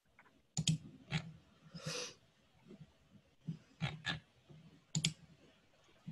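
A scattered handful of sharp computer clicks, keyboard keys and mouse buttons, picked up faintly by a video-call microphone, with a brief soft hiss about two seconds in.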